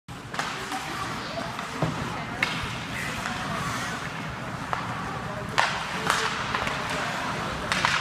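Ice hockey play in an indoor rink: skates scraping the ice under steady spectator chatter, with about six sharp clacks of sticks and puck, the loudest a little past halfway.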